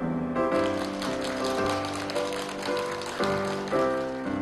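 Gentle piano background music with sustained notes, joined through most of the middle by a dense patter of audience applause that fades out near the end.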